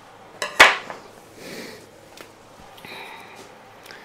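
Hands handling a plant cutting and scissors over a plastic tub of potting soil: one sharp click about half a second in, then faint brief rustling twice.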